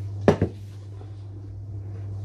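Stainless steel pressure cooker pot set down on a kitchen countertop: a quick double knock of metal on the counter about a third of a second in. A steady low hum runs underneath.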